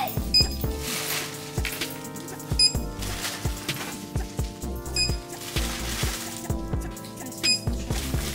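Short electronic beeps from a store checkout's barcode scanner, four of them about two and a half seconds apart as items are rung up, over background music with a steady beat.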